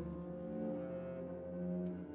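Solo bassoon with string orchestra playing held notes: one high note is sustained throughout while the lower parts move to new pitches once or twice.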